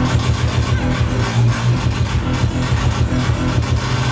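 Loud electronic dance music over a festival sound system, dominated by a heavy, pulsing bass.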